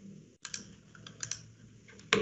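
A few faint computer keyboard clicks, spread over two seconds.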